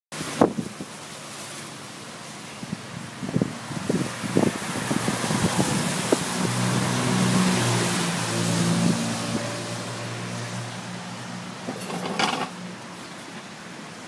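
Street traffic on a wet road: a steady hiss of tyres on wet tarmac, with a passing vehicle's engine hum swelling and fading through the middle. A few sharp knocks come about three to four seconds in.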